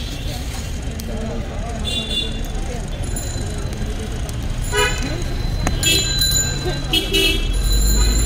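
Busy street traffic: a steady low rumble with several short vehicle horn toots, one about five seconds in and a few more close together near the end, over background chatter.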